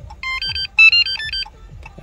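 A short electronic tune of beeps stepping up and down in pitch, several notes over about a second. It is the confirmation signal during programming of a new key fob to the truck, a sign that the key has been accepted.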